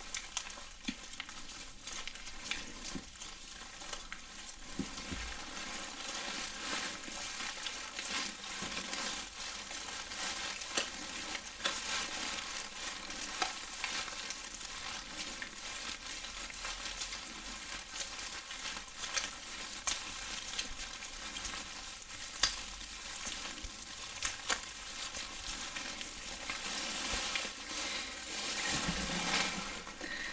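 Gloved hands rubbing wet massage lotion close to the microphone: a steady, wet, crackly rubbing full of tiny clicks that swells a little near the end.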